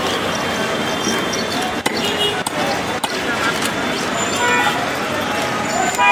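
Busy outdoor market din: people talking in the background over steady street noise, with a few sharp knocks about two to three seconds in.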